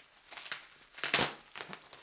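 Bubble wrap crinkling as it is handled during unwrapping: two rustling bursts, the second and louder about a second in.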